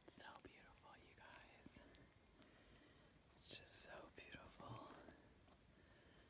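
A person whispering, faint, in two short stretches of whispered words: one at the start and another about halfway through.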